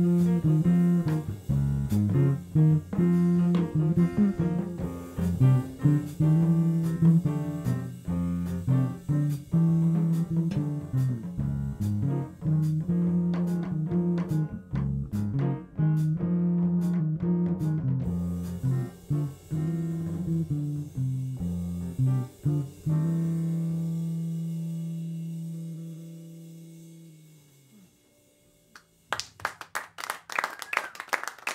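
Jazz quartet of guitar, bass, piano and drums playing, with guitar and bass up front, then ending the tune on one long held chord that fades away over several seconds. Clapping starts just before the end.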